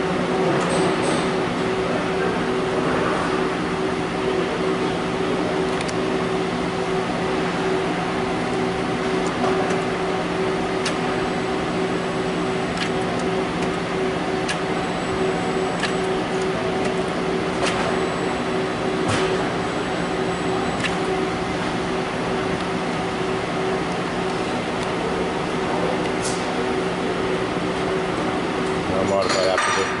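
Steady machine hum made of several held low tones, with scattered faint clicks.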